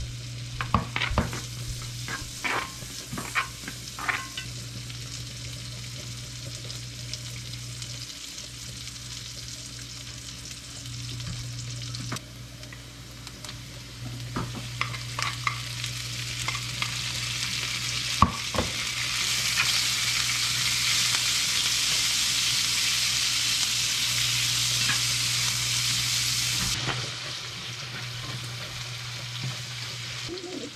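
Sliced pork belly frying with onions in a hot pan, with a ladle clicking against the pan and plate as the meat is spooned in, mostly in the first few seconds and again midway. The sizzle grows much louder in the second half and cuts off abruptly a few seconds before the end, over a steady low hum.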